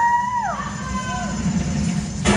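A high-pitched voice swoops up, holds for about half a second and falls away, with a shorter, lower swoop after it, over a low murmur from the audience.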